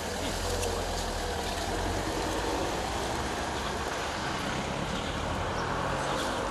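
Steady low rumble of road traffic, like a vehicle engine running nearby, under an even outdoor background noise.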